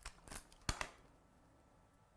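Card and paper pieces being handled and pressed together by hand: a few soft rustles and light clicks in the first second, the sharpest a single click just under a second in.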